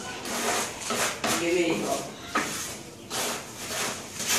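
Indistinct voices in short snatches, with rustling and light knocks.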